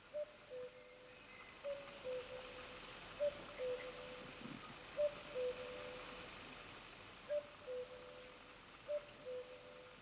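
A faint two-note call, a higher note falling to a slightly lower one, repeated six times at uneven gaps of about one and a half to two and a half seconds, over a soft steady hiss.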